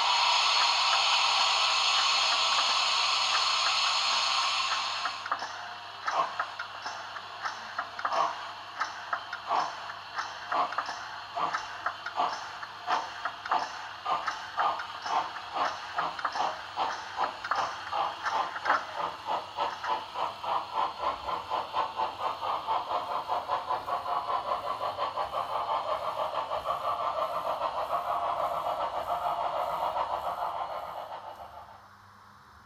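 Sound decoder of a model steam locomotive playing a departure through its small loudspeaker: a loud steam hiss for about the first five seconds, then exhaust chuffs that start about one a second and quicken steadily until they run together as the locomotive gathers speed.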